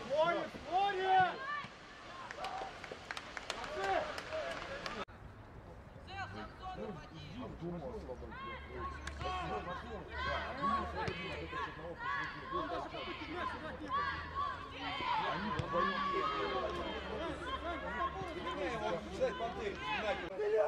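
Players and coaches shouting and calling to one another across an outdoor football pitch, their words indistinct. The sound changes abruptly about five seconds in, at an edit.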